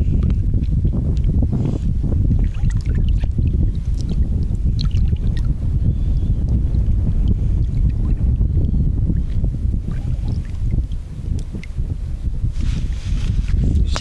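Wind buffeting the microphone as a loud, steady low rumble, with faint small splashes of shallow water as a bonefish is held in it.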